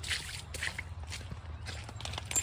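Footsteps on a wet, muddy, leaf-covered trail: soft, irregular squelches and crunches of leaf litter, over a steady low rumble.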